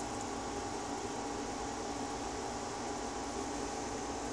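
Steady background hiss, even and unchanging, with a faint steady hum tone running through it.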